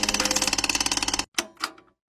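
Edited intro sound effect: a loud, very rapid buzzing stutter for about a second, then two short swishes.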